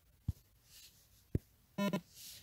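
Two faint low thumps, then near the end a short pitched blip from the phone as it takes a screenshot.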